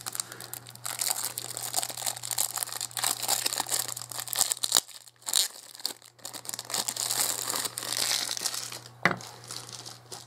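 Thin clear plastic bag crinkling as hands pull it off a plastic display stand, in a long run of crackles with a short lull about halfway through. Near the end there is a sharp click, over a steady low hum.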